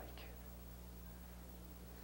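Pause in a lecture: a steady low electrical hum with faint hiss from an old videotape recording, and the faint tail of a spoken word at the very start.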